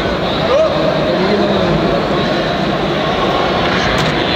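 Steady background hubbub of a large sports hall: a continuous rushing noise with indistinct voices of people around the mats.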